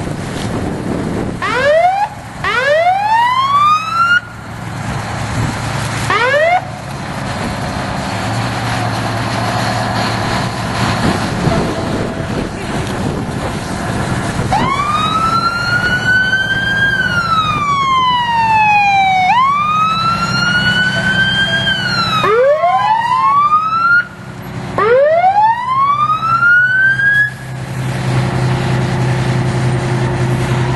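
Emergency vehicle siren sounding over a steady engine hum. First come short rising whoops, then from about halfway a slow wail that rises and falls twice, then more rising whoops near the end.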